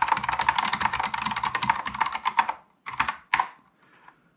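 Typing on a Kinesis Advantage 360 split keyboard fitted with tactile Cherry MX Brown key switches. A fast, dense run of keystrokes lasts about two and a half seconds, then a few last strokes come and the typing stops.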